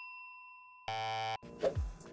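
A bell ding's ringing tone dying away, then a short buzzer tone lasting about half a second: quiz-show transition sound effects.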